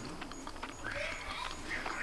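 A person chewing a soft bite of chicken burger with the mouth closed: faint, scattered wet clicks and smacks from the mouth.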